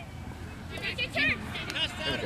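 Children's voices shouting and calling out in short bursts, starting a little under a second in, over a low steady rumble.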